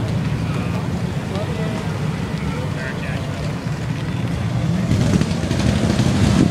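Bugatti Veyron's quad-turbo W16 engine running with a low, steady rumble as the car pulls slowly away, growing louder near the end.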